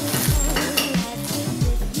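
Crust of a large artisan oat loaf crackling as a hand squeezes it close to the microphone, under background music with a steady thumping beat.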